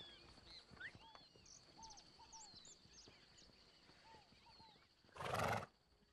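Faint birdsong of many short chirps, then just after five seconds in a horse gives one loud, short snort lasting about half a second.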